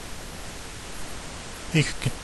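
Steady, even hiss of background noise in a pause between spoken lines; a voice begins near the end.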